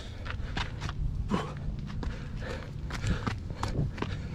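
Hiker's footsteps scuffing and crunching on a steep dirt-and-root trail, in an irregular series of steps.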